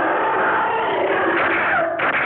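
A prehistoric monster's long, rasping screech, a film sound effect, held steady and cutting off near the end.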